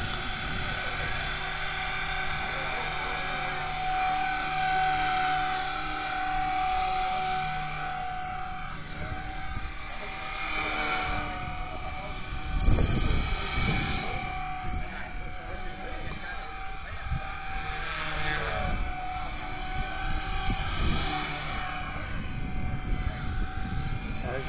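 Blade 180 CFX electric RC helicopter running at flying speed, its brushless motor and rotors making a steady whine. Gusts of wind rumble on the microphone, the strongest about twelve seconds in.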